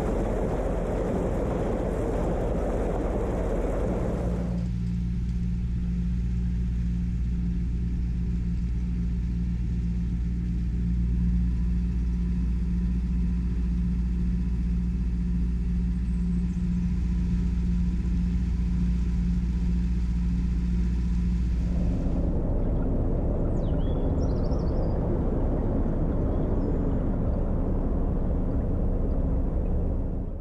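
Narrowboat engine running steadily, a low even hum. A rushing noise rides over it for the first few seconds and again from about two-thirds of the way through.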